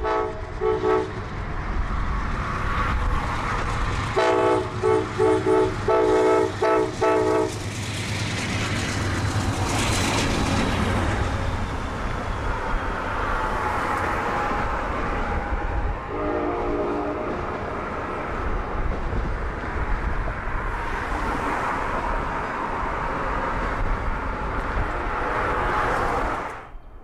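Amtrak Silver Meteor passenger train passing through a railroad interlocking at about 25 mph. Its diesel locomotive sounds its horn: one blast at the start, a quick series of short blasts a few seconds later, and one more blast past the middle. Under the horn, the steady rumble of the engine and the wheels clacking over the switches go on as the cars pass by.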